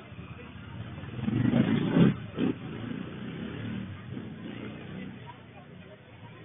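Crowd voices with a car driving past close by on the street, the sound swelling to its loudest about two seconds in, with a second brief jump just after.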